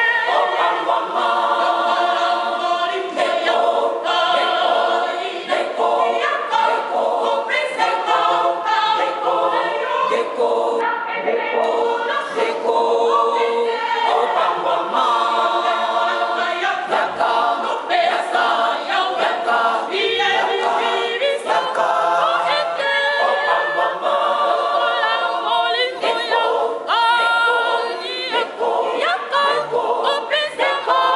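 A women's choir singing together in several voices, with no instruments heard.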